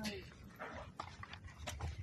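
Handling noise: a short rustle followed by a few light clicks, over a low background rumble.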